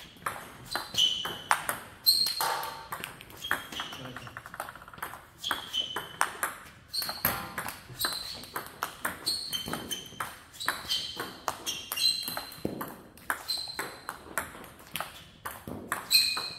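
Table tennis ball struck back and forth by rubber-faced paddles and bouncing on the table in a quick practice rally of short pushes and flips. It is an uneven run of sharp clicks, several a second, many with a brief high ping as the ball bounces.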